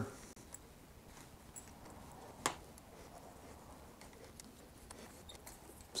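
Faint small clicks and taps from hand work on the saddle clamp of a Thudbuster seat post as it is tightened and adjusted, with one sharper metallic click about two and a half seconds in.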